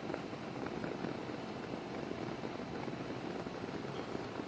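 Can-Am Ryker three-wheeler running at a steady cruising speed, its engine mixed with wind and road noise.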